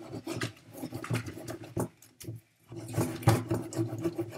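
Plastic soda bottle being shaken hard in rapid strokes, with a brief pause about halfway through.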